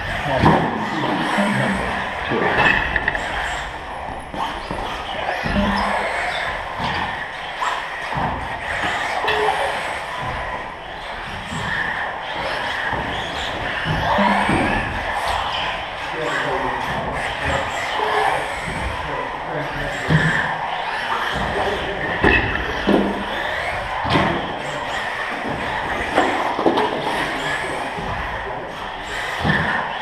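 Radio-controlled model cars racing on a carpet track in a large hall: repeated thuds and clatters as they land off wooden jump ramps and knock into the track edging, with echo off the hall walls.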